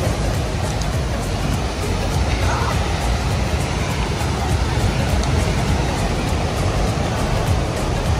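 Steady, gusting wind on the microphone, heaviest in the low end, with ocean surf rushing beneath it.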